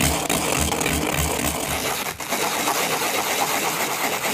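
Sawn edge of a small piece of white plastic pipe being sanded with quick back-and-forth strokes, about three a second, to remove the burrs and round the edges.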